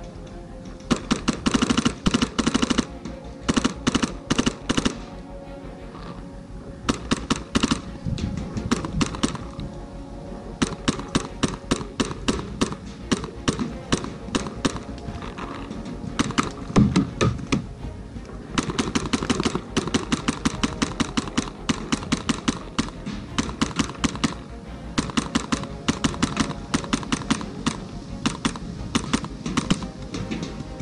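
Paintball markers firing in rapid strings of shots, bursts of one to several seconds with short breaks between them, over background music.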